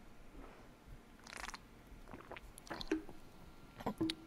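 Faint sounds of a man drinking from a bottle: a short sip about a second in, followed by a few small swallowing clicks.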